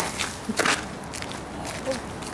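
Footsteps of people walking on a path, a few uneven steps.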